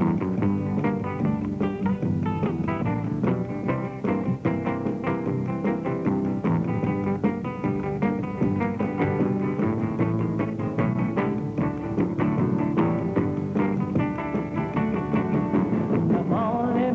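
Hollow-body electric guitar playing a song's instrumental intro, picked notes in a quick, even rhythm over lower accompanying notes.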